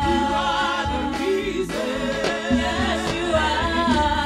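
Gospel worship song: voices singing over a band, with drums and bass keeping a steady beat.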